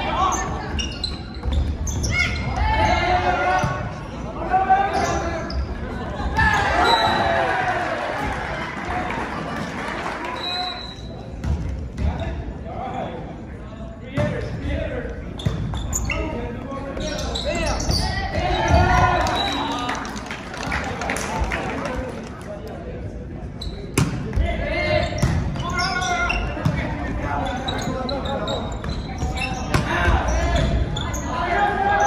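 Volleyball rally in a large gym: sharp slaps of the ball being served, set and hit at intervals, among the shouts and calls of players and spectators.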